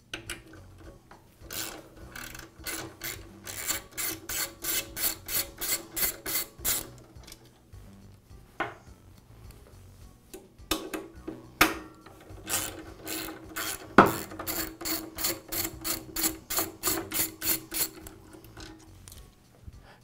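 Hand socket ratchet clicking as it backs out the bolts holding the chop saw's vise to the base, in two runs of quick, even clicks at about four a second. A few lone clicks fall between the runs, and there is one louder knock partway through the second run.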